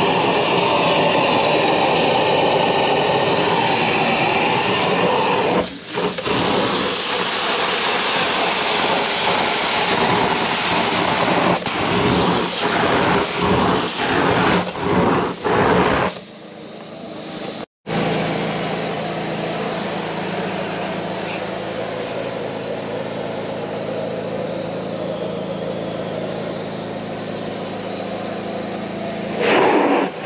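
Carpet extraction wand of a truck-mounted steam-cleaning unit, with a loud, steady rush of suction as it pulls water and air out of the carpet. The sound dips and returns several times as the wand is stroked and lifted. After a cut partway through, the rush runs on more evenly with a faint low hum under it.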